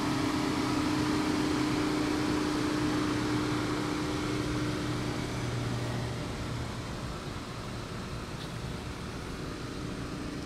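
Steady mechanical hum over outdoor background noise, with two low steady tones that fade away after about five or six seconds as the sound grows gradually fainter.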